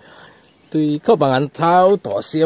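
Brief quiet stretch, then a man's voice speaking in short phrases from about three-quarters of a second in.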